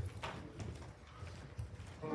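Soft, irregular footsteps and small knocks of people walking across a carpeted floor, heard faintly over room tone.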